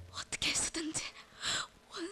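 A person whispering in breathy gasps: three short airy bursts of breath about half a second apart, with little voice in them.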